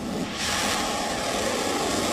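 A ballistic missile's rocket motor in flight: a steady rushing noise that sets in abruptly about half a second in.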